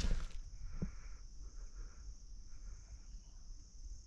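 Steady, high-pitched chorus of insects such as crickets in woodland, with faint rustling and one soft tick about a second in.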